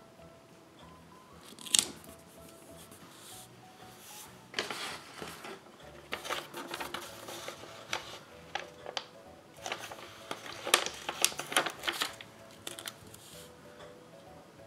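Paper sticker sheets and planner pages being handled, rustling and crinkling in irregular bursts from about four seconds in, with a single sharp click about two seconds in. Soft background music plays underneath.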